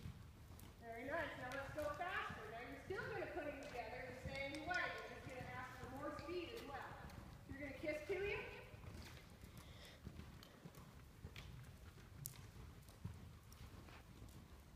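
Hoofbeats of a horse trotting on soft dirt arena footing, with a person's voice talking over them for most of the first nine seconds or so.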